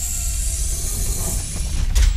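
Title-sequence sound design: a steady low rumble under a bright high hiss, with a sharp click near the end.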